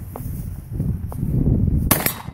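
A single shot from a Winchester 1897 pump-action shotgun near the end, sharp and loud.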